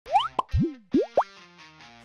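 Short intro sting: a quick run of about five cartoon-style pops that slide sharply upward in pitch, one rising then falling, over ringing musical tones that fade away in the second half.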